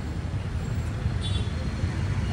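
Street background noise: a steady low rumble of road traffic, with a brief snatch of a voice a little over a second in.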